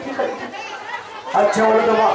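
A man's voice declaiming loudly through a microphone and loudspeakers, breaking off briefly, then coming back with a drawn-out syllable near the end.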